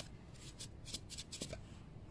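Faint, scattered clicks and rustling from hands handling metal engine parts.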